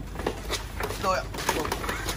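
Men's voices calling out as a motorbike is lowered from a truck bed by hand, with a few short knocks and clunks from the bike being handled.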